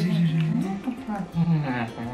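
A man's wordless, drawn-out playful vocal noise. It wavers up and down in pitch and drops lower near the end.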